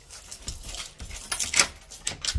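A string of irregular light clicks and rustles, like small objects being handled, with the loudest click about a second and a half in.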